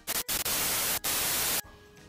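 Edited-in TV-static sound effect: a loud, even hiss across the whole range that starts with a short burst, drops out briefly about a second in, and cuts off suddenly after about a second and a half.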